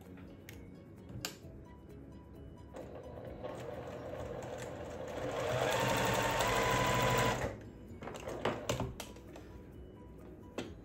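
Electric sewing machine stitching a seam, picking up speed so its whine rises in pitch, then stopping about three-quarters of the way in. A few sharp clicks follow near the end.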